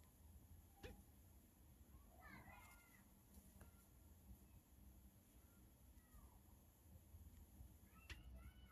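Near silence, with faint, brief gliding animal calls about two and a half seconds in, again about six seconds in and near the end, and a single soft click a little under a second in.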